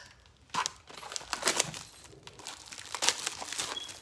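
Packaging wrap being pulled off a small framed sign, crinkling and tearing in irregular bursts, loudest about halfway in and again near three seconds.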